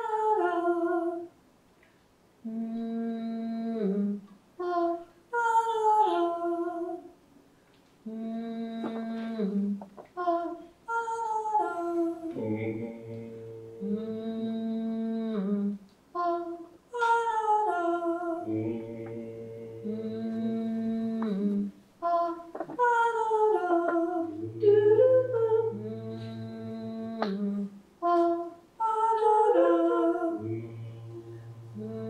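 Small group of voices improvising layered, wordless vocal loops: a hummed low note and a falling sung 'mm-hmm, ah' figure recur every five or six seconds. A lower man's voice joins with a held drone about twelve seconds in, and the texture builds as parts are added.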